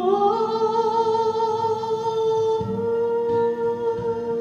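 A woman singing solo into a handheld microphone, stepping up in pitch just after the start and then holding one long, steady note.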